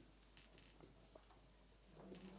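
Whiteboard marker writing on a whiteboard, heard faintly as a string of short strokes while letters are drawn.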